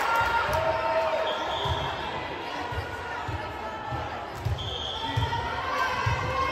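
Dull thumps on a gymnasium floor, repeating every half second or so, amid voices echoing in a large gym.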